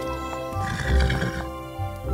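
A cartoon horse whinny sound effect, about half a second in and lasting under a second, over background music.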